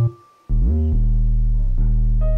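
UK drill beat playing back from FL Studio: a deep 808 bass note slides up in pitch and cuts off, then another slides up about half a second in and holds, under a sparse higher melody note.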